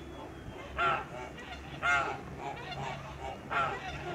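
Kholmogory geese honking: three loud calls, the last near the end, with softer calls in between.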